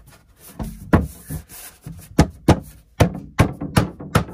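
Thin luan plywood shelf being knocked down by hand into a tight fit in a closet: about seven sharp wooden knocks and thunks, coming closer together in the second half.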